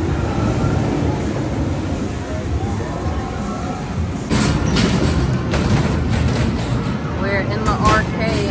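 A steel roller coaster train, the Incredible Hulk Coaster, rumbling along its track, mixed with crowd chatter. About four seconds in the sound gets louder, with a run of sharp clicks and knocks.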